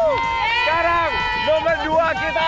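A small group of people shouting and cheering with repeated high-pitched calls.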